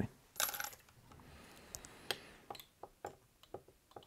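Faint handling of small fly-tying scissors at the vise: a short scrape about half a second in, then a string of light metallic clicks as the scissors are brought to the fly after the whip finish.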